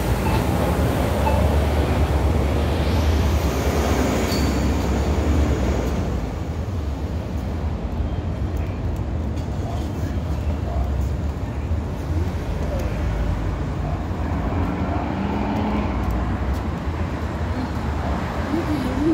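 City street traffic: a bus's engine rumble and road noise, louder over the first six seconds as it passes, then a steady lower traffic hum.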